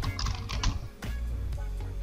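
A few scattered computer-keyboard keystrokes over soft background music.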